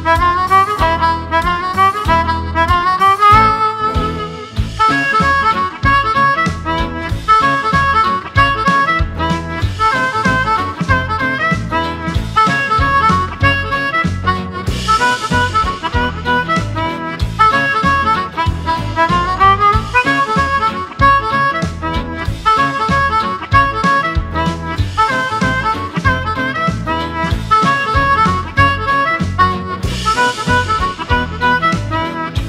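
Amplified Lucky 13 harmonica in PowerChromatic tuning, cupped against a handheld microphone, playing a swing jazz-blues melody over a backing track. The line has quick upward runs a couple of seconds in and again about two-thirds of the way through.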